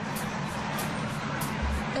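A steady outdoor rumble and hiss, with a faint music bed underneath: low bass thumps and light, regular high ticks.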